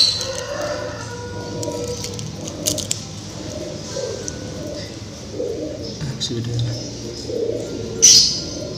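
Domestic pigeons cooing, a low call repeated every second or two, with a few light clicks from the eggshell being handled.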